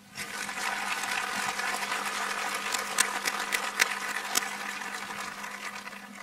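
Audience applauding: many hand claps starting suddenly together and carrying on steadily, easing off slightly near the end.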